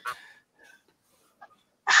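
Brief lull in a laughing conversation: a short breathy laugh trails off at the start, near silence follows with a couple of faint small noises, and a voice comes back in near the end.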